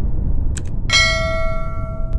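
Subscribe-button sound effects: a mouse click about half a second in, then a bell chime about a second in that rings on with several clear tones, the highest fading first. A low rumble runs underneath.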